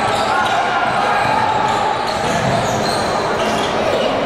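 Basketball game sounds in a large gym: a ball being dribbled on the hardwood and sneakers squeaking, over a steady murmur of voices echoing in the hall.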